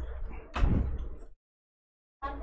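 A dull thump about half a second in, fading over the next second, over a steady low hum. Then the sound cuts off abruptly into dead silence.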